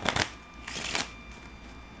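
A deck of playing cards being riffle-shuffled by hand: a quick riffling burst at the start and a second one just under a second in, then quieter handling.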